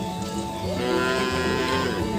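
A head of cattle mooing: one drawn-out moo starting less than a second in and lasting about a second, over steady background music.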